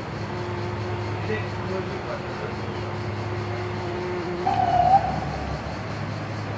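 Bumblebee buzzing at eggplant flowers: a steady hum for about four seconds, then a louder, higher-pitched buzz lasting about half a second, with a steady low hum underneath.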